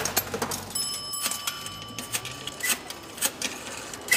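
Payphone being used: a run of sharp mechanical clicks and clunks from the coin slot and dial, with a steady electronic tone sounding for about two seconds starting about a second in.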